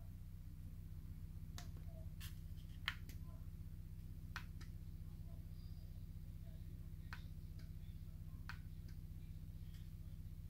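Quiet room tone with a steady low electrical hum, broken by about ten faint, irregular small clicks.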